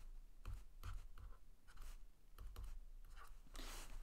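Faint, irregular scratching and light taps of a stylus on a tablet as an equation is handwritten stroke by stroke.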